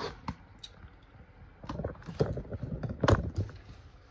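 Knocks, clicks and rattles from handling a ring light stand with the phone mounted on it while it is set back upright, the loudest knock about three seconds in.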